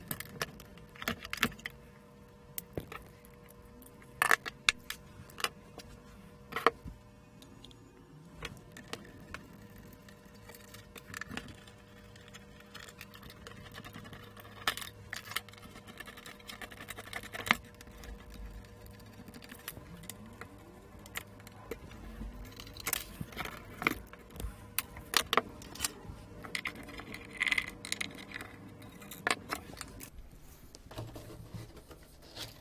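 Scattered sharp metallic clicks and clinks as small screws and metal parts of a dismantled display panel are handled and set down, over a faint steady hum.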